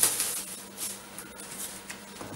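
Cardboard rustling and scraping as the flaps of a large shipping box are handled. A sharp burst comes right at the start and is the loudest part, then lighter rustles fade out.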